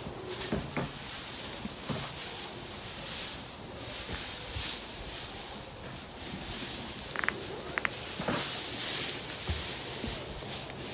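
Dry hay rustling and crackling as armfuls are pulled off a pile and shaken loose onto the ground, in uneven surges.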